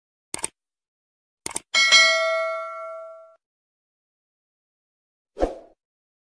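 Subscribe-button animation sound effect: two quick double clicks, then a notification-bell ding that rings out for about a second and a half. A single short thump comes near the end.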